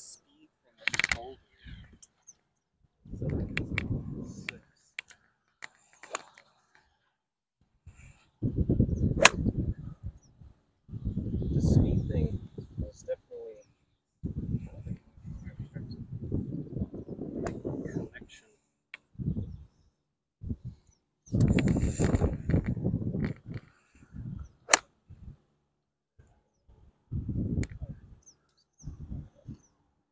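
Wind buffeting the microphone in gusts, with several sharp clicks of an iron club striking golf balls, the loudest about nine seconds in.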